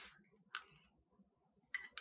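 Quiet mouth sounds of a bite of hot food: a short soft puff of breath blowing on a spoonful of meatball at the start, a single sharp click about half a second in, and a couple of faint clicks near the end as the bite is taken.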